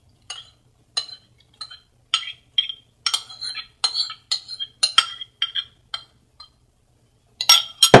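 A metal spoon scraping a mixture out of a bowl into a mug, giving a string of light, irregular clinks against the bowl and the mug rim. Near the end comes a louder clatter as the bowl and spoon are set down on the counter.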